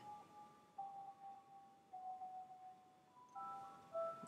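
Faint music from the iMovie project playing back: a slow run of held, chime-like notes that step to a new pitch about every second.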